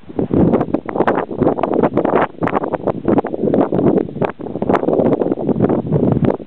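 Wind buffeting the camera's microphone in loud, irregular gusts.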